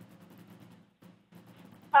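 Near-quiet pause between speakers: faint steady hiss with a short complete dropout about a second in. A voice starts right at the end.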